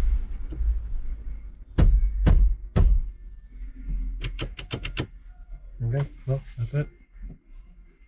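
A gear knob being pushed and knocked down onto a Fiat van's dash-mounted gear lever: three sharp knocks about half a second apart, then a quick run of clicks as it is worked into place.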